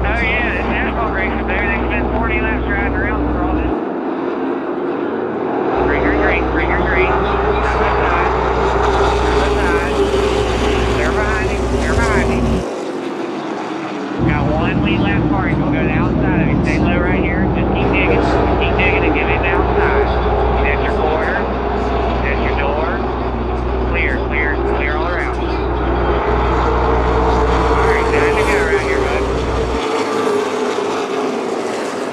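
Outlaw Late Model race cars running laps on a paved short-track oval. Their engines make a continuous loud drone that rises and falls in pitch as the pack circles past.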